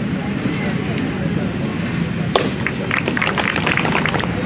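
Outdoor crowd chatter and murmur, with a single sharp knock a little past halfway and a patter of scattered hand claps near the end.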